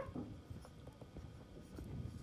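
Faint scratching and small taps of a stylus writing by hand on a pen tablet.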